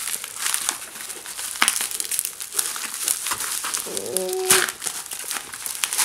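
Bubble wrap crinkling and crackling as it is pulled off a jar by hand, with many small sharp crackles.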